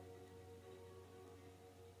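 National Style O-14 metal-bodied resonator guitar, a slide chord left ringing and slowly fading away, faint.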